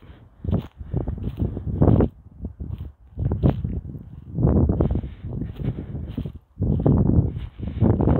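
Footsteps crunching through dry leaf litter, in irregular bunches of crackling and rustling that come and go.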